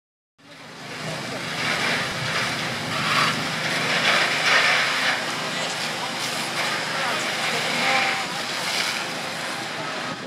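Sound of a firefighting scene at a burnt-out poultry house: a steady rushing hiss that swells and eases, over a low engine hum, with indistinct voices. It cuts in suddenly less than half a second in.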